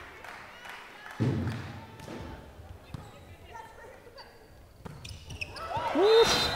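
A volleyball struck by hand in a large echoing hall: a loud serve hit about a second in, then a few fainter ball contacts as the rally goes on. Noise in the hall swells near the end.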